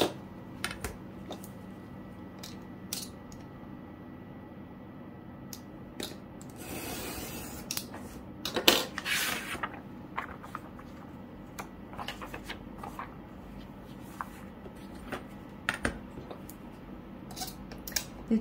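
Loose sheets of punched diary paper being handled and shuffled on a desk: paper rustling with scattered light taps and clicks, a cluster of sharper knocks about halfway through, and a steel ruler being set down on the cutting mat.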